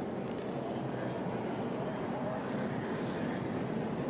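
Steady track noise of NASCAR Cup cars' V8 engines running under caution, a continuous even wash of engine sound with no distinct pass-by or impact.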